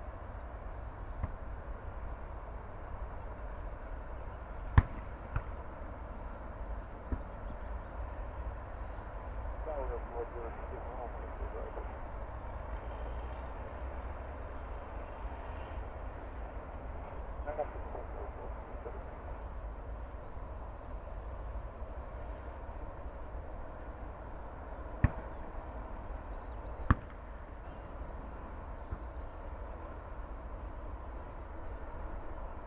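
Steady low rumble and distant jet engine noise of an airliner rolling out on the runway after landing. A few sharp clicks break through, the loudest about five seconds in and twice near the end.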